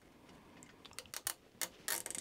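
A few faint, sharp clicks of a nylon cable tie being handled and fed around a wire, starting about halfway in.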